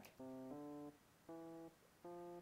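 GarageBand's Classic Electric Piano software instrument playing back a simple melody slowly at 80 beats per minute: three faint, separate single notes, each about a third of a second long, with short gaps between.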